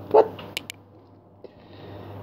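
A man says one short word, then pauses; two faint clicks follow, over a low steady hum.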